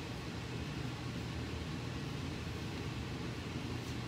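Steady low background hum of room noise with no distinct events, apart from a faint tick near the end.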